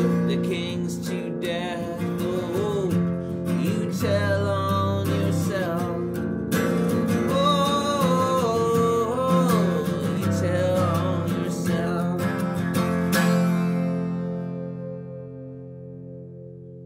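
Acoustic guitar strummed with a man singing over it; about three seconds before the end the final chord is left to ring and fades away.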